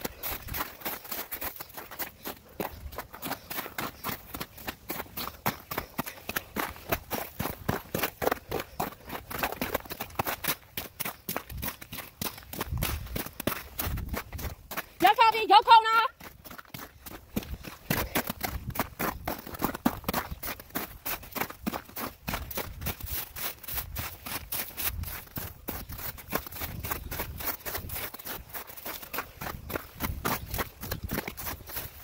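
Footsteps through snow and slush in a steady walking rhythm. About halfway through comes one short, loud, wavering high-pitched call.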